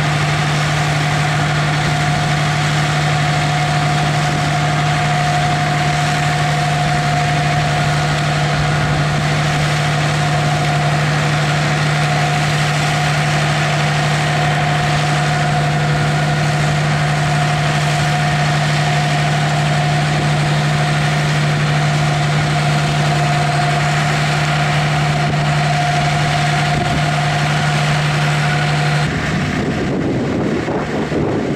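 Deutz-Fahr AgroStar tractor engine running at steady revs while it pulls and powers a Dewulf harvester, a constant drone with a steady higher whine above it. The sound changes abruptly about a second before the end.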